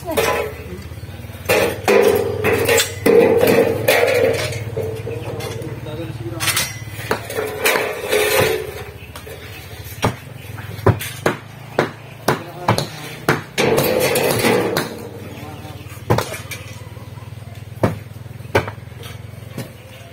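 Irregular sharp knocks of masonry hand tools striking concrete hollow blocks and wooden formwork, coming close together in the second half, with voices in the background.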